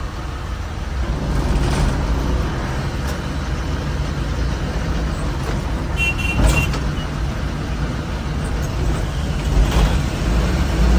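Diesel engine of an SETC bus running with a steady low rumble as the bus drives along, heard from inside the cab. A short high-pitched beep about six seconds in.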